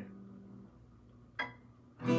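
Acoustic guitar's strummed C chord ringing out and fading away, then a single short, sharp string click with a brief ring about one and a half seconds in.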